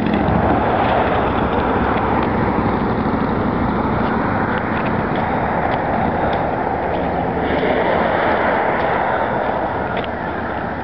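Steady road traffic noise from vehicles passing on a busy boulevard.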